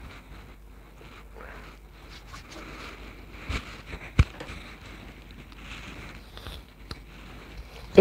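Soft rustling of hair and clothing rubbing on a clip-on collar microphone as fingers are run through long curled hair. Two sharp knocks about three and a half and four seconds in.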